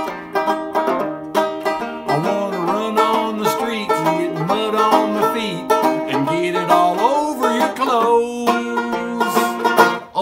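Banjo strummed and picked with a capo on the neck, with a man's voice singing along in long gliding notes that no words were transcribed from.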